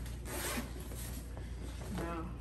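A backpack zipper being pulled, one quick stroke about half a second in, with fabric rustling around it.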